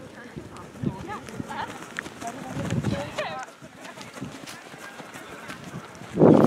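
Running footsteps of a group of football players on grass close by, loudest as they pass a few seconds in, with scattered voices calling and chatting among them.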